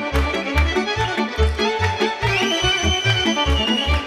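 Romanian folk band playing an instrumental passage: a violin lead with accordion over a steady bass beat, with one long held high note in the second half.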